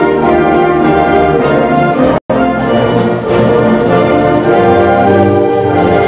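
Concert band playing the school song, with the brass to the fore in sustained chords. The sound drops out completely for an instant a little over two seconds in.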